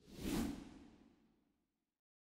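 A whoosh sound effect that swells quickly and fades away within about a second.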